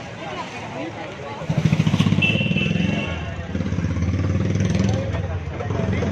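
A small motor-vehicle engine runs close by. It comes in loud about a second and a half in and eases a little after about three seconds, over a background of street chatter.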